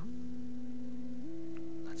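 Background music of soft, long-held notes that step up in pitch a little past halfway.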